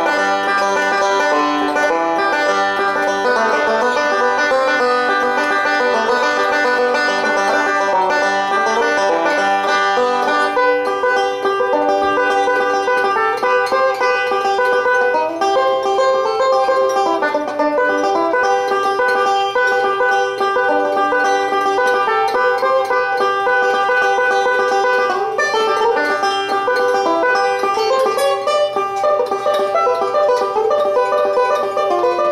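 1927 Gibson TB-3 banjo, a pre-war no-hole tone ring pot with resonator, fitted with a Frank Neat five-string conversion neck. It is fingerpicked with metal picks in a steady, unbroken stream of bluegrass-style notes.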